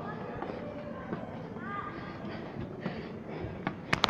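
Light footsteps on an iron spiral staircase over a quiet background of distant voices, with a burst of sharp clicks and knocks near the end.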